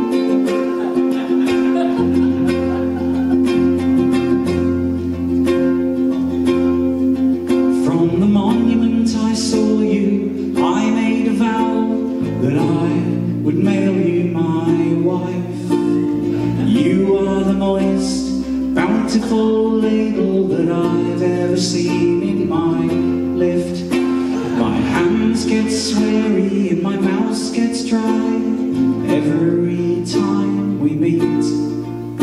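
A ukulele strummed with an electric bass guitar holding low notes that change every few seconds, played live as a song's accompaniment. A man's voice sings over them from about eight seconds in.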